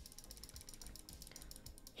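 Faint, fast, even run of small clicks from a computer mouse as drawings on the chart are undone; it stops when the talking resumes.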